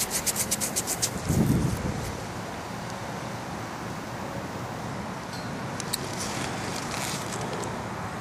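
Fingertips rubbing soil off a freshly dug Roosevelt dime: a quick run of scratchy rubbing strokes in the first second or so, then a steady outdoor noise.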